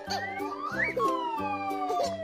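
A cartoon whistle sound effect glides up in pitch for about a second, then slides slowly back down, over background music.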